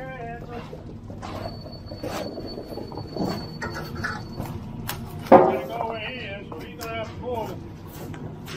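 Concrete mixer truck's diesel engine running steadily in the background, under faint indistinct voices. A sudden louder sound comes about five seconds in.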